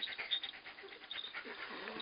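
German Shepherd panting close to the microphone, with the small bells of a jingle collar ringing lightly in the first second.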